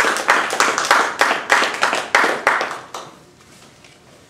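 Audience applause, led by one pair of hands clapping close by at about four claps a second, dying away about three seconds in.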